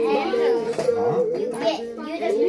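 Young children's high-pitched voices chattering, with no clear words.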